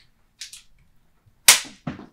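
A handheld chiropractic adjusting instrument fires against the sacrum, delivering a left-to-right adjustment thrust. It gives one sharp, loud snap about one and a half seconds in, and a fainter click just after.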